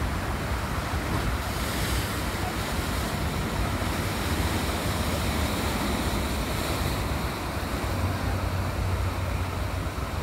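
Surf breaking and washing over a rock shelf, a steady rush of water that swells a little twice, with wind buffeting the microphone in a low rumble.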